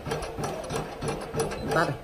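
A Japanese home bread machine running its kneading cycle with the pan empty: the motor and gearbox turn the kneading paddle with a steady mechanical whirr.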